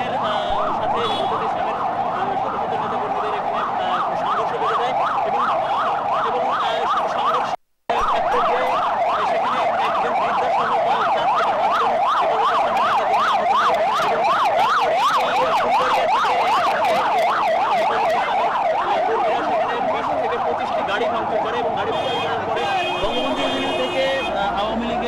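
Emergency vehicle siren wailing in a fast yelp, its pitch rising and falling several times a second without pause. The sound cuts out briefly about a third of the way in.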